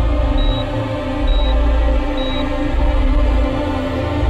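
Tense, sustained background score with a deep pulse about once a second. Over it, a short high beep of a hospital heart monitor repeats about once a second, stopping about two and a half seconds in.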